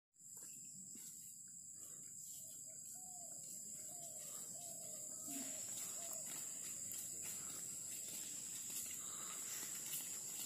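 Faint outdoor ambience with a steady high-pitched insect drone. A short run of faint repeated animal calls comes from about three to six seconds in.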